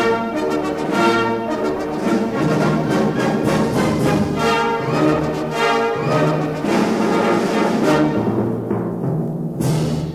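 Orchestral music with brass and timpani, the concert-hall excerpt of a vintage stereo demonstration record.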